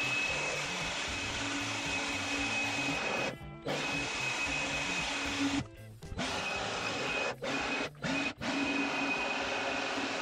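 Handheld leaf blower running with a steady rush of air and a high whine. It stops briefly several times: about three and a half seconds in, around six seconds, and twice more shortly after.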